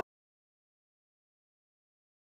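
Silence: music stops abruptly right at the start, and nothing at all is heard after it.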